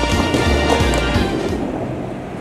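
Background music with a bass line and held notes; the treble drops away about a second and a half in, and the music grows quieter.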